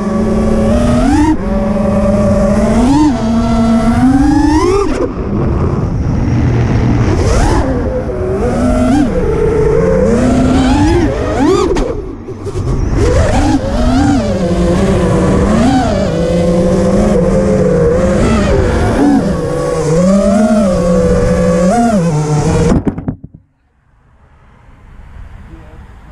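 FPV freestyle quadcopter's Xilo 2207 2550 kV brushless motors and propellers whining, recorded by the onboard GoPro. The pitch swoops up and down over and over with throttle changes, then cuts off near the end.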